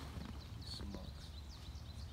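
Outdoor backyard ambience: a few short, high chirps from birds over a low, steady rumble.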